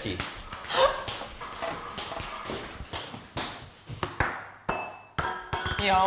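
A small game piece thrown onto a table, landing and bouncing with a few light knocks and a short high ping, under faint background voices.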